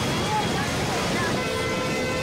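Busy street din with nearby voices; a vehicle horn starts about a second and a half in and holds one steady note.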